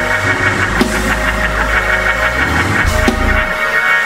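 Live church band music: sustained keyboard chords with a fast pulsing shimmer over held bass notes, and two drum hits, one about a second in and one near the end.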